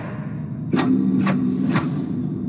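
Trailer sound design between lines of dialogue: a low rumble, then, about three-quarters of a second in, a steady low drone with three sharp hits about half a second apart.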